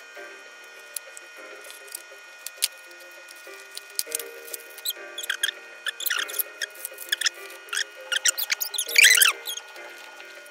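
Background music over the crackle and rustle of small cardboard toy boxes and plastic bags being torn open, with quick clicks and short squeaky sounds that get busier toward the end. The loudest are falling squeaks about nine seconds in.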